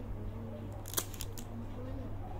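A sharp click about a second in, followed quickly by a few lighter clicks, over faint background voices and a steady low hum.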